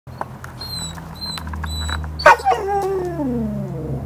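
A dog gives one long whining howl that starts loudly a little past halfway and falls steadily in pitch over about a second and a half.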